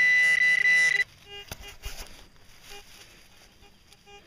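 Metal-detecting pinpointer probe sounding a loud, steady buzzing alarm tone for about the first second, held over the buried bullet in the loose dirt. After that come only faint short beeps and a few light handling knocks.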